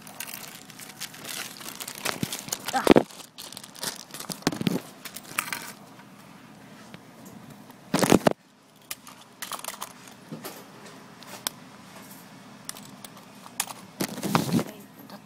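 Clear plastic packaging crinkling and rustling as it is handled, with scattered clicks and knocks of small plastic parts. A loud bump comes about eight seconds in.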